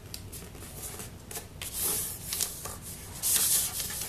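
A sheet of paper rustling and crinkling as it is folded and creased by hand, with small taps and scrapes; two louder rustles come about two seconds in and again just after three seconds.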